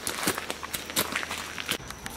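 Footsteps crunching on a gravel path at a walking pace, about two to three steps a second.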